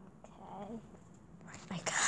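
A quiet pause in speech: a faint, soft voice about half a second in, then louder speech beginning near the end.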